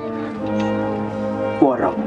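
A man's voice through a PA loudspeaker holding one long, level hesitation sound, then starting a word near the end.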